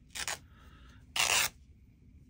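Two short scraping rustles from fabric pieces and scissors being handled on the craft desk, a quieter one near the start and a louder one about a second in.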